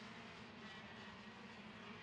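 Faint, steady drone of KZ2 125cc two-stroke shifter kart engines running at a slow formation-lap pace.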